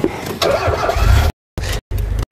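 Safari vehicle's engine starting about a second in and then running at a low rumble, with the sound cutting out briefly twice.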